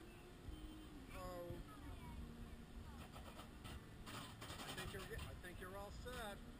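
Faint high-pitched children's voices calling out over a steady low background rumble, with a short noisy burst about four seconds in.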